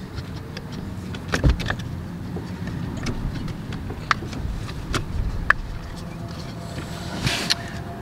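A rubber-backed aluminium pedal cover being stretched and pressed onto a car's brake pedal: a handful of sharp clicks and taps with rubbing, and a brief rustle near the end, over a steady low hum.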